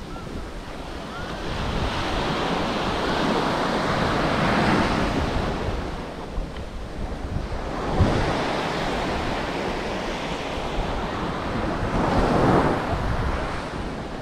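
Waves washing onto a sandy beach, the surf noise swelling and fading in slow surges, with wind rumbling on the microphone.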